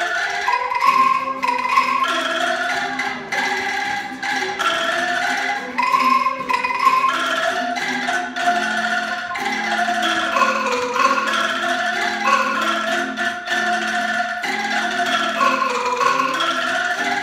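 An angklung ensemble, tuned bamboo tubes in wooden frames, playing a continuous melody together, with guitar accompaniment.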